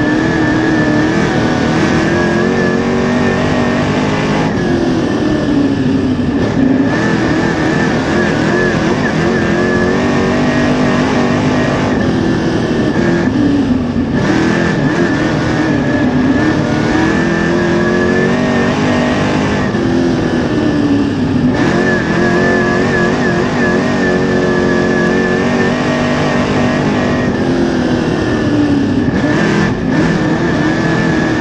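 Crate Late Model dirt race car's V8 engine at race pace, heard from inside the cockpit. Its pitch keeps rising and falling every few seconds as the driver gets on and off the throttle.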